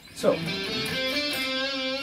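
Electric guitar playing the opening phrase of an improvised solo: a note picked about a quarter second in, then held, ringing notes, one of them stepping up in pitch about a second in.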